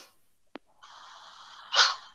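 A click, then about a second of breathy hiss that ends in a short, loud burst of breath close to a microphone, heard through video-call audio.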